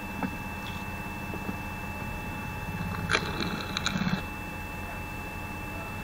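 The 5.5 kW electric motor of a homemade screw (cone) log splitter running steadily with a constant hum and whine. About three seconds in, a burst of cracking and knocking lasting about a second as a piece of log is split on the spinning threaded cone.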